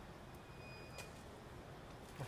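Faint, steady outdoor background noise, with a thin high whistle lasting under a second and a light click about a second in.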